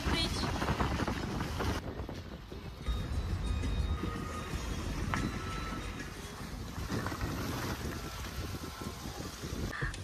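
Low, steady rumble of wind buffeting the microphone together with the road noise of a car driving on a wet road.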